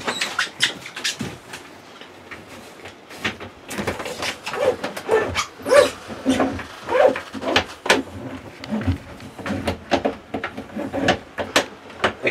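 Short hand drain snake being worked into a bathtub drain to clear a clog: irregular clicks, knocks and scraping of the metal cable against the drain and tub, with a few short squeaky tones in the middle.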